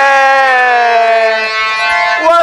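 A singer holding one long sustained note at the end of a sung phrase, sinking slightly in pitch.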